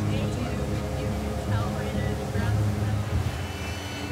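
Motorboat engine running under way, a steady low hum, with faint voices in the background.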